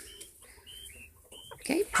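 Coturnix quail giving about four short, faint high peeps in quick succession.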